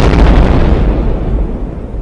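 Explosion sound effect: a loud blast with a deep rumble that slowly fades, then cuts off suddenly at the end.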